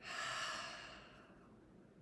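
A woman's long, audible exhale, like a sigh: a breath out that starts suddenly and fades away over about a second and a half.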